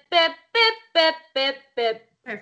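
A woman singing a staccato vocal exercise on a short 'bip' syllable: five clipped, evenly spaced notes, about two a second.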